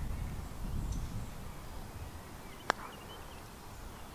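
A single sharp click of a putter striking a golf ball, a little past the middle, against a steady low rumble.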